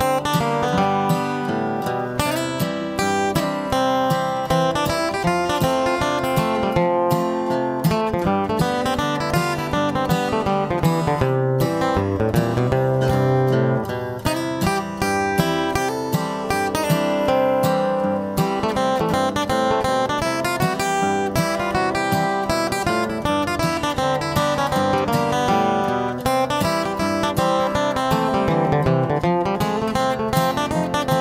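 Flatpicked steel-string acoustic guitar improvising a bluegrass break in the key of C, a continuous run of quick single-note lines, played over a backing rhythm track.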